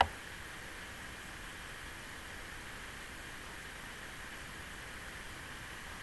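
Steady low hiss of a recording's background noise, with no speech. A single sharp click sounds right at the start: a computer mouse click as the slide is advanced.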